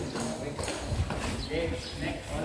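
Background chatter of a group of people, with a few irregular light knocks.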